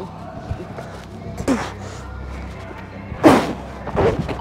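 A thump about a second and a half in, then a loud slam a little past three seconds, over background music: a wheelchair and its rider crashing on the trampoline and into the wall.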